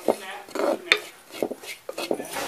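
A spoon stirring grated coconut and whole spices being roasted in a clay pot: a run of irregular scrapes against the pot, with a sharp knock about a second in.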